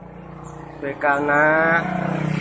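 A motor vehicle engine runs steadily nearby and grows louder, with a man's voice over it partway through.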